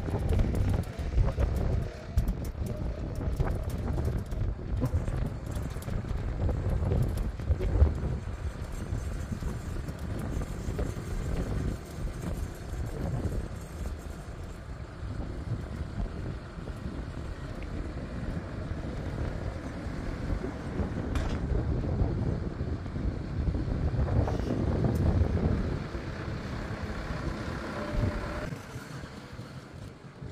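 Farm tractor engine running as the tractor drives with its front loader, heard under gusty wind buffeting the microphone.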